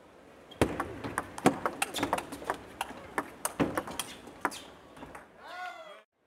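Table tennis rally: the ball clicks off the rubber-covered rackets and the table in a quick, irregular string of sharp clicks for about four seconds. Near the end a voice calls out briefly.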